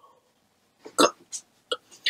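A boy's short, sharp breathy vocal sounds: four or five quick gasps, the loudest about a second in.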